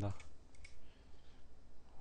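A few faint clicks over a low, steady electrical hum.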